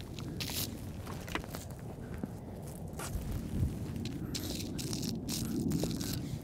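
Scattered footsteps, scuffs and clothing rustle on a hard tennis court as a person walks about and bends to set down dot markers.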